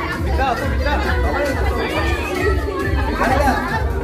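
Several people talking at once over background music with a steady bass beat.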